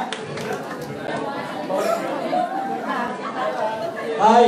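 Overlapping chatter of many people talking at once in a large room, with no single clear voice.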